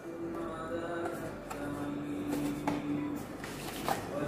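Soft background music with long held notes, under a few faint clicks and rustles from a cardboard box being opened by hand.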